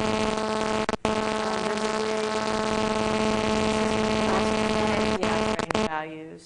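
A loud, steady buzzing hum with hiss. It breaks off for an instant about a second in and cuts off abruptly just before the end.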